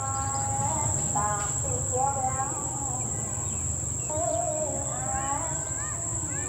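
Steady, high-pitched drone of jungle insects running throughout, with soft gliding pitched notes rising and falling over it in short phrases.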